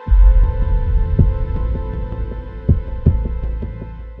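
Dark cinematic trailer sound design: a deep boom hits at the start over a held drone, then a low rumble with scattered low thuds, fading toward the end.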